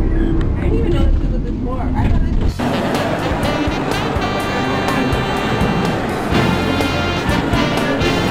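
A low rumble that cuts off abruptly about two and a half seconds in, giving way to the bustle of a crowded indoor market: many voices talking over one another, with music playing.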